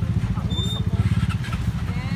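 Steady low rumble of running engines, from a crane's diesel engine and idling motorcycles in stalled traffic, with voices faint in the background.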